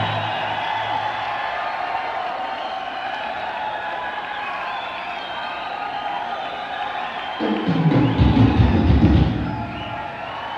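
Heavy metal band playing live in a large hall, with a held guitar chord ringing over crowd cheering. About three-quarters of the way through, a run of heavy drum hits comes in.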